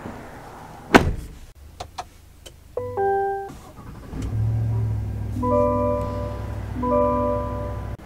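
A sharp thunk about a second in, then an electronic chime. About four seconds in, the 2023 GMC Sierra 1500's 6.2-litre V8 starts and settles into a steady low idle, and a repeating warning chime sounds twice over it.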